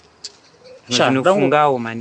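A single short tongue click of annoyance ("nxa"), then a man speaking from about a second in.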